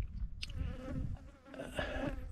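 A fly buzzing as a steady drone, over low wind rumble on the microphone.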